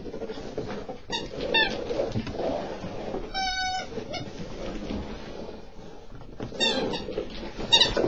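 Chihuahua puppy scrabbling round and round on carpet in a chase game, with a few short, high-pitched squeaks: one held for about half a second midway and quick rising ones near the end.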